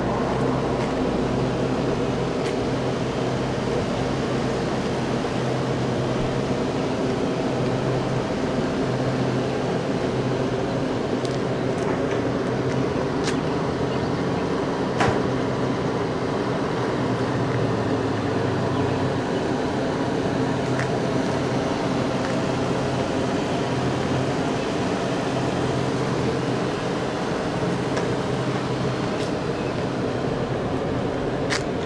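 A steady machine hum with a low pitched drone that wavers slightly in pitch, and a few faint clicks.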